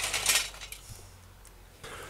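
Glowing charcoal briquettes tipped from a metal chimney starter rattling and clinking into the kettle grill's charcoal basket; the clatter dies away about half a second in, leaving a few faint clinks.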